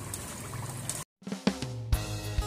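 Battered potato slices deep-frying in hot oil with a steady sizzle, which cuts off abruptly about a second in. Background music with a drum beat then starts.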